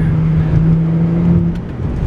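BMW 135i's turbocharged N55 inline-six droning steadily with road rumble, heard inside the cabin while driving. The drone drops away about one and a half seconds in.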